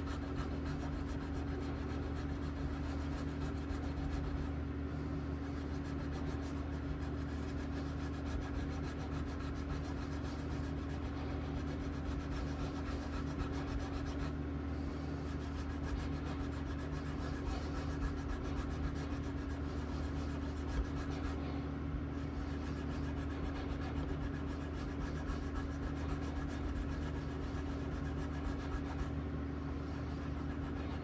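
Small strokes of an abrasive rubbed back and forth over the metal frets of a 5-string bass guitar, smoothing out file and tool marks. A constant low hum runs underneath.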